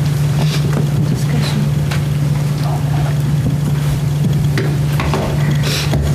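A steady low hum of room background noise, with faint scattered clicks and rustles.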